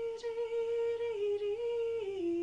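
A woman singing a Gaelic song unaccompanied, holding one long note that dips slightly a little past a second in and then comes back up.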